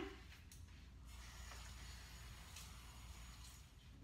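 Faint running tap water as paper towels are wetted under it, a soft even hiss over a low steady hum.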